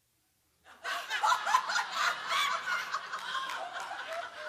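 Congregation laughing in a room, breaking out suddenly about a second in and carrying on as overlapping laughter from several people.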